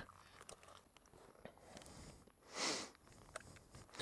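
Very quiet: faint scattered clicks and crackles, with one short rustle of noise about two and a half seconds in.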